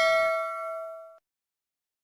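Bell-like ding sound effect for the notification-bell click, its ring fading and then cut off suddenly a little over a second in.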